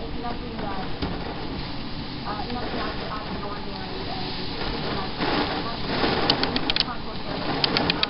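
Indistinct speech from a television news broadcast over a noisy background, with two quick runs of sharp clicks, about six and seven and a half seconds in.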